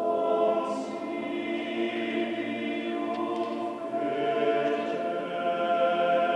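Male vocal ensemble of low and middle voices singing unaccompanied sacred polyphony in a large cathedral, moving slowly through sustained chords.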